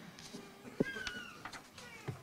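A faint, thin high squeak, falling slightly in pitch and lasting under a second, just after a soft thump about a second in.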